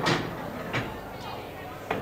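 A few faint clicks from an English pool shot: the cue tip striking the cue ball and the balls knocking together, over quiet room tone in a large hall.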